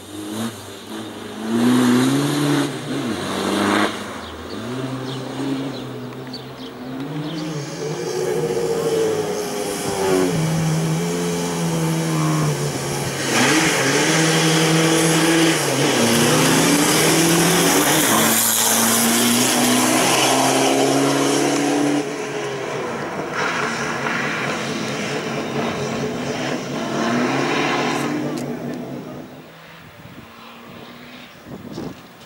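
Beetle-bodied Volkswagen slalom race car's engine revving hard, its note climbing and dropping over and over as the car brakes and accelerates between cone chicanes.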